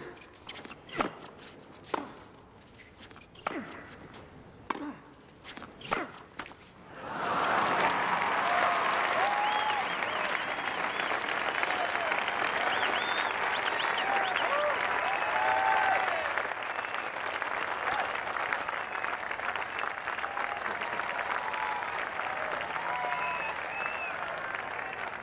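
A tennis rally, with sharp ball strikes about once a second for some seven seconds. Then a crowd breaks into loud applause and cheering, with shouts and whistles, as the point ends.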